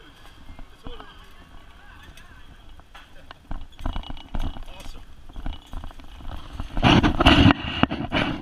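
Cycle rickshaw rolling along a street, its frame knocking and rattling irregularly over the road. A louder noisy rush comes near the end.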